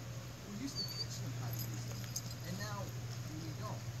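A dog whimpering over distant voices and a steady low hum.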